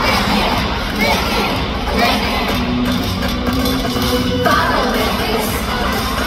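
Large concert crowd screaming and cheering over loud K-pop dance music from the concert sound system, recorded from among the audience.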